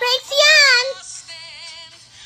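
High-pitched cartoon singing voice with music, playing from a phone's speaker: a loud line with bending pitch in the first second, then a softer wavering note.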